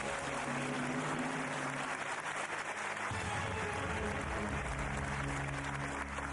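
Studio audience applauding over the quiz show's music cue for a correct answer. A deep held note comes in about halfway through.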